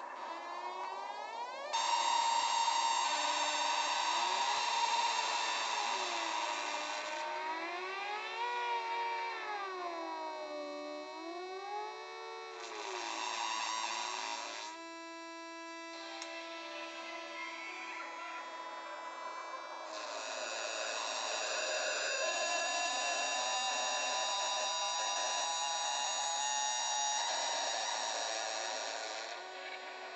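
Electronic synthesizer drones, buzzy and rich in overtones. The pitch wavers slowly up and down like a siren and the sound jumps to a new setting every few seconds, with a louder held tone in the last third.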